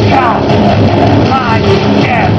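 An electro-industrial (EBM) band playing loud live: a dense synth-and-drum track with a steady low pulse, and twice a short falling high synth note.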